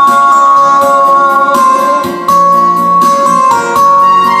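A karaoke backing track plays an instrumental passage of sustained melodic notes through the room's speaker, with no singing. The sound dips briefly about halfway through.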